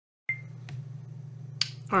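A recording cutting in with a brief high blip, then a steady low electrical hum. A single sharp click comes a little before a man starts to speak at the very end.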